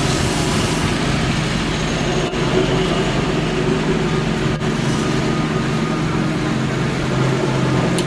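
Engine of construction machinery running steadily at an even speed, with two brief dips in the sound.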